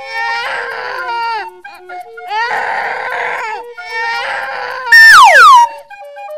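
A cartoon child's sobbing cry in three bouts over light background music. Near the end comes a loud sound effect that slides sharply down in pitch.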